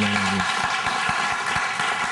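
Studio audience applauding: many hands clapping together in a steady patter.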